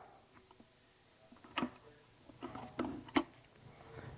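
A few faint clicks and knocks as the rubber dust cap is pulled off the back of a plastic headlight housing: one click about a second and a half in, a small cluster of clicks a little later, and a sharper click just after three seconds.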